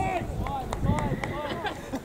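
Players' voices shouting and calling to each other across an open football pitch, distant and faint, in short separate calls.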